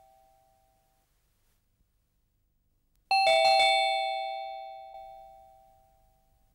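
Doorbell chime ringing: the last of one ring fades out in the first second, and about three seconds in the bell rings again with a few quick chimes that slowly die away. It signals a visitor at the front door.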